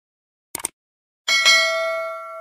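A brief clicking rattle, then a single metallic bell-like clang that rings on in a few steady tones and slowly fades, as a logo sound effect.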